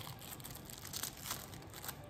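Faint rustling and a few light clicks of plastic parts being handled: a bike phone mount's waterproof phone case and its magnet disc turned over in the hands.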